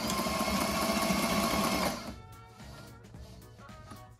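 Sailrite Ultrafeed LSZ walking-foot sewing machine running steadily at reduced speed, stitching through four layers of waxed canvas without strain. It stops about halfway through.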